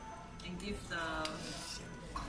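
Light clinks of chopsticks and a metal ladle against a small bowl and a metal shabu-shabu pot, a few scattered taps.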